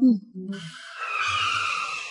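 Car tyres squealing as a car skids to a stop, a sustained screech of about a second and a half that starts about half a second in and fades near the end.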